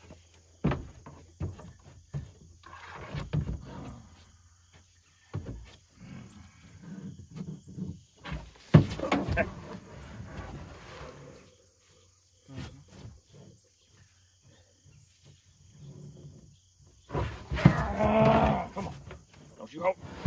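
A man grunting and groaning with effort in several strained bouts, the longest about 9 s in and again near the end, among knocks and scrapes, as he heaves a heavy boar hog up onto a pickup tailgate.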